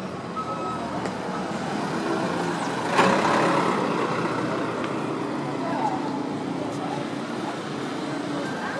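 Street traffic: a minibus passes close by about three seconds in, over steady traffic noise. A single reversing beep sounds briefly near the start.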